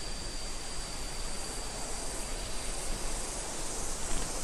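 Steady, even rush of a waterfall's falling water heard through jungle, with insects singing high above it in a thin, steady tone.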